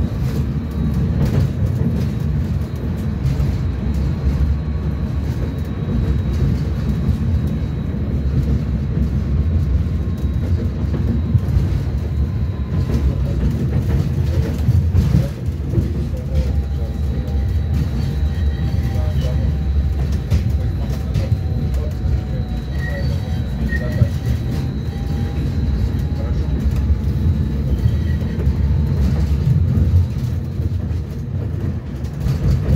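Cabin noise of a Belkommunmash BKM 802E low-floor tram under way: a steady low rumble of wheels on rail, with a faint high steady whine running through it.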